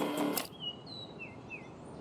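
Music from a portable stereo (boombox) cuts off abruptly about half a second in as it is switched off. A quiet outdoor background follows, with a bird chirping four short times.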